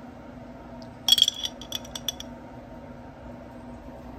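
A metal fork clinking against a glass jar: a quick cluster of bright, ringing clinks about a second in, then a few lighter taps, over a low steady hum.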